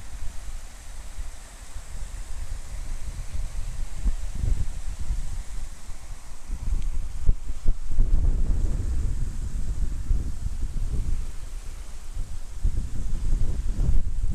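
Wind buffeting the microphone: a low, gusty rumble that swells and fades, strongest from about halfway through and again near the end.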